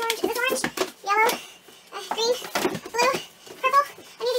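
A high-pitched voice in short quick bursts, mixed with knocks and scrapes of books being pulled off and set down on a bookshelf.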